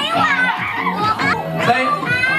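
Many children talking and calling out at once in a crowded room, with music playing underneath.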